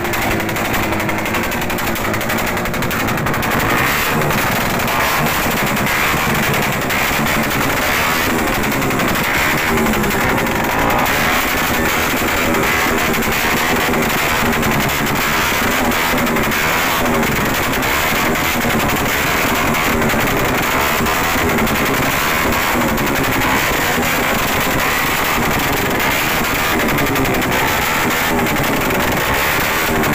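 Modified motorcycle with a loud open exhaust revving and firing rapid popping backfires that shoot flames from the pipe, over loud music.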